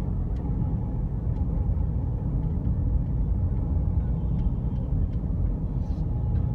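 Steady low rumble of a car being driven, heard from inside the cabin: engine and tyre noise from the road.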